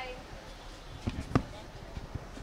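A short cluster of knocks and thuds about a second in, one much sharper and louder than the rest, over low background noise; a fainter knock follows near the end.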